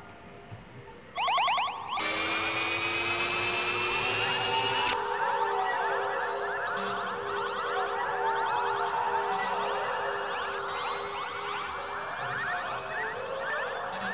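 Electronic sci-fi sound effects from a 1960s TV soundtrack. A short burst of fast warbling comes about a second in. From about two seconds, a dense, continuous electronic warble of rapid pulsing trills runs over steady tones, loudest for the first few seconds and then a little softer.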